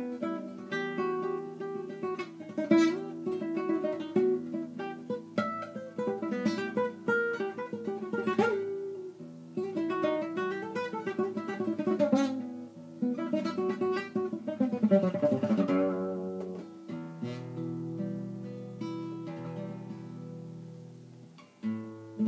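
Acoustic guitar playing an oriental-style melody: quick plucked runs, a falling run about two thirds of the way through, then held notes left to ring and slowly fade near the end.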